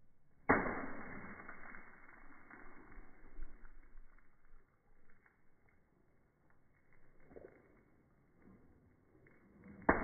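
A water balloon bursts against a brick wall with a sharp splat about half a second in, followed by a few seconds of fading splash and spatter, slowed down along with the slow-motion footage. A second balloon strikes just before the end.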